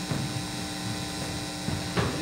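Room tone with a steady electrical hum, a few constant tones over low background noise, in a pause between speech; a small click near the end.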